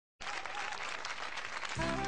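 Studio audience applauding. Near the end, the music of a song starts under the clapping.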